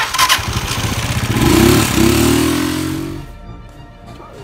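An engine revving, with a loud rushing noise over it, loudest about a second and a half in and fading away a little after three seconds.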